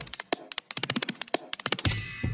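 Preview of Output Arcade's 'Drummed Out' percussion sampler: rapid, stuttering clicky percussion hits, with a low sustained synth-bass note coming in near the end.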